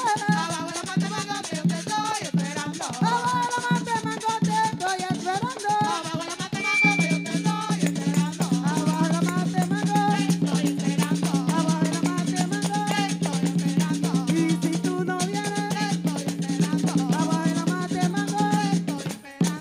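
Live Afro-Dominican palo music: a hand-played palo drum and jingling tambourines keep a fast rhythm under women's singing voices. A steady low drone joins the music about seven seconds in.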